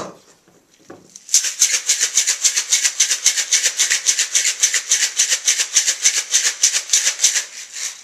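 Crushed ice rattling inside a stainless steel cocktail shaker being shaken hard in a fast, even rhythm of about six strokes a second, starting about a second in and stopping just before the end.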